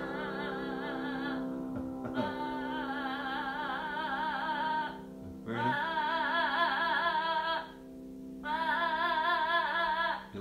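A voice singing a slow song over sustained keyboard chords: four long held phrases with wide vibrato, separated by short breaths.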